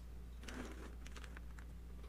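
Quiet room tone with a steady low hum and a few faint, soft ticks about half a second to a second in.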